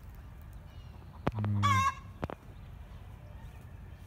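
A sharp click, then a short call of about half a second from a domestic fowl, with a wavering upper pitch, followed by a fainter click.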